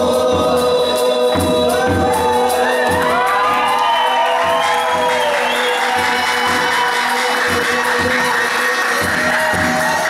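Live Brazilian folk music: a long held sung note with several voices bending around it, over a ten-string viola caipira and steady beats on a hand-held frame drum with a shaker.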